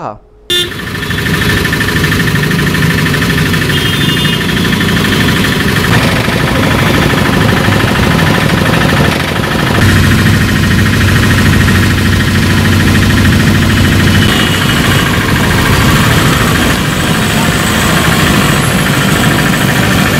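Loud, steady street noise: a crowd of people talking over one another, mixed with motor vehicles running, with a heavier engine rumble in the middle.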